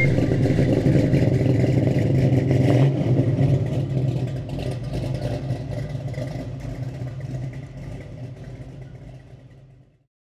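A car engine running steadily, fading out gradually over the last several seconds.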